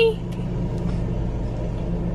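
Car idling, heard inside the cabin: a steady low hum.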